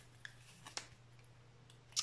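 A few faint, scattered clicks of a deck of Bach flower cards being handled and fanned out, with a sharper card snap at the very end.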